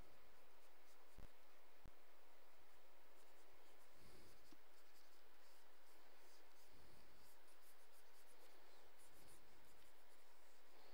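Faint, quick scratchy strokes of a stylus drawing on a pen tablet's surface, coming thicker in the second half, with two soft knocks a little after a second in.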